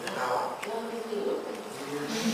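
Low, indistinct murmuring voices in a lecture room, with a faint click about half a second in.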